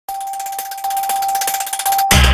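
Electronic logo intro sting: one steady high tone held under a fast run of bright, glittering ticks.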